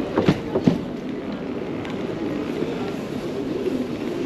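Steady background noise of a large indoor station concourse, with a faint murmur of distant voices, and a few short knocks in the first second.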